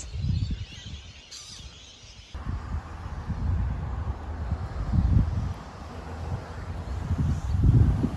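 Wind buffeting the microphone: an uneven, gusty low rumble. It changes abruptly and grows stronger a little over two seconds in.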